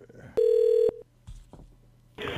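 A single electronic telephone beep on the line between calls: one steady mid-pitched tone about half a second long, starting just under half a second in.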